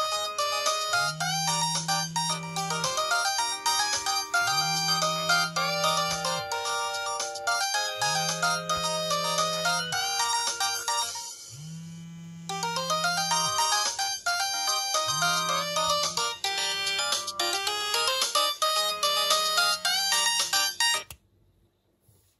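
Samsung SGH-E780 clamshell phone playing its default polyphonic ringtone for an incoming call, with a low hum pulsing about every second and a half beneath the melody. The tune drops out briefly about halfway through and starts again, then cuts off suddenly about a second before the end as the fold is opened to answer the call.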